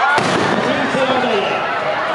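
A crowd of many voices calling and shouting over one another, with a single sharp bang just after the start.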